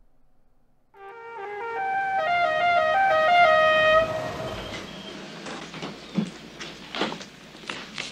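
Music: a melody of held notes starts about a second in, swells for a few seconds and then fades. A few sharp knocks sound near the end.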